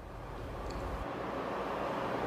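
Steady background noise from a live remote broadcast feed, an even hiss and rumble with no distinct events, slowly growing louder.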